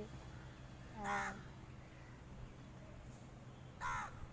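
A crow cawing twice, one short call about a second in and another near the end.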